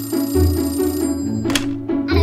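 Toy telephone ringing over background music, then a sharp click about one and a half seconds in as its handset is picked up.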